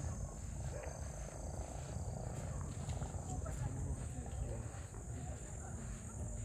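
A steady high-pitched chorus of night insects, with soft footsteps on the paved path about twice a second and a low rumble beneath.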